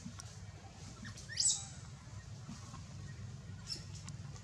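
A short, high-pitched animal chirp rising steeply in pitch about one and a half seconds in, with a fainter one near the end, over a steady low rumble.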